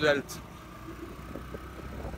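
A motor vehicle running nearby: a steady low engine and road rumble after a brief spoken word.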